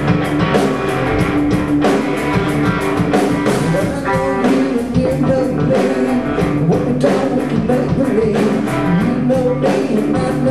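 A live rock band playing: electric guitar, electric bass and drum kit, with a steady beat.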